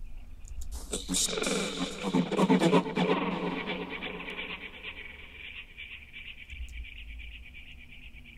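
A glitched-out vocal sample playing back from the music software, starting about a second in. After about two seconds it thins into a fast, fluttering tail that fades slowly over the last few seconds.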